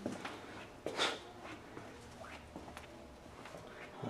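Faint handling noise in a quiet room: light rustles and small clicks, with a short hiss about a second in.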